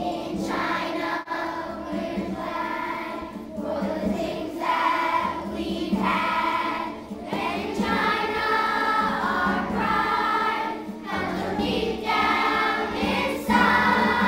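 A children's school choir singing a song in short phrases, over steady accompaniment.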